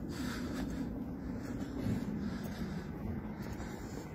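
Low, steady rumble of distant road traffic.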